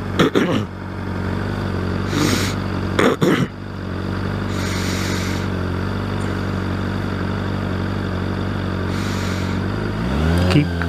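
Honda CBR600RR's inline-four engine idling steadily, with a cough near the start.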